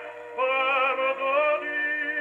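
Operatic singing with vibrato, played from a record on an acoustic gramophone with an eight-foot papier appliqué horn and a Columbia No 9 soundbox. The sound has little treble. After a brief lull, a new sung phrase begins about half a second in.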